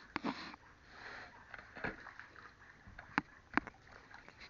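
Handling noise from a hand-held camera being moved: soft breathy rustling and several sharp clicks and knocks, the two loudest near the end about half a second apart.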